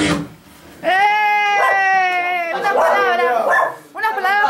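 A long howl-like cry held at one steady pitch for nearly two seconds, starting about a second in, followed by shorter wavering cries.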